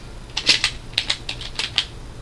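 Typing on a computer keyboard: a quick run of about ten keystrokes, starting about half a second in and stopping just before the end.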